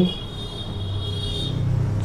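Steady low background hum that swells slightly after about half a second, with a thin high whine that fades out near the end.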